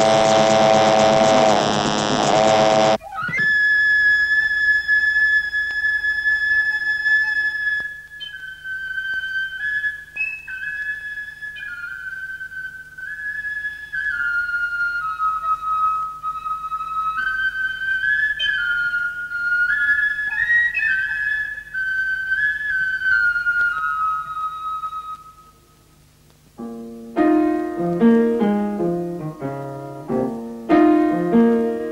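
A solo flute plays a slow, high melody of held notes that step up and down, after a loud dense passage that cuts off about three seconds in. Near the end the flute stops, there is a brief silence, and quick piano notes begin.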